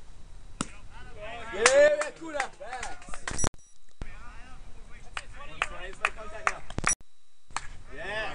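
Voices of people calling out and talking at a baseball game, with scattered sharp knocks and clicks. The sound cuts out completely twice, briefly, about three and a half seconds in and again near seven seconds.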